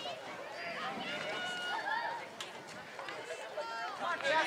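Several voices calling and shouting at once from the sidelines and field of a soccer match, overlapping and unclear.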